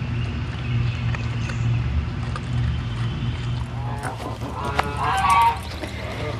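A steady low hum, with a short run of goose honks about four to five seconds in.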